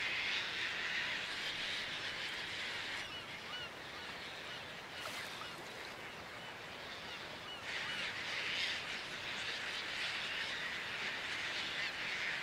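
A breeding colony of Caspian terns calling, a dense unbroken chorus of many birds. It thins for a few seconds after about 3 s, leaving a few separate calls, then swells again at about 7.5 s.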